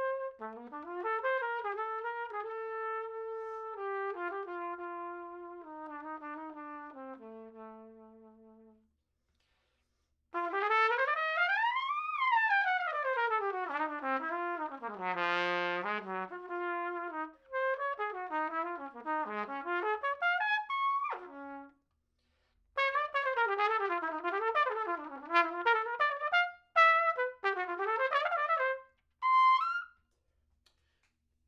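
Adams Hornet hybrid trumpet played solo with a trumpet flugel (TF) mouthpiece. It opens with a slow descending phrase of held notes that dies away, then after a short pause comes a fast run sweeping up and back down and a held low note. Quick, busy lines in short phrases follow to the end.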